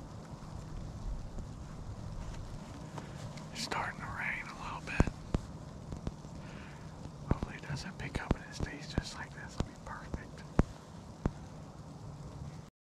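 Rustling of camouflage clothing and sharp clicks of the harness gear and tether being handled close to the microphone, with more frequent clicks in the second half.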